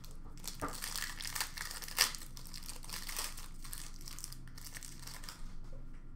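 Foil wrapper of a 2020-21 Panini Select basketball card pack crinkling as the pack is opened and the cards are pulled out, with one sharp snap about two seconds in.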